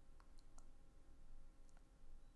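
Near silence broken by a few faint, short clicks, three close together about a quarter of a second in and one more near the end.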